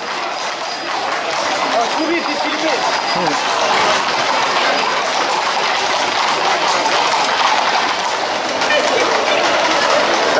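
The hooves of a close-packed group of Camargue horses clattering on an asphalt street, walking together, with crowd voices throughout. The clatter grows louder over the first few seconds as the group comes closer.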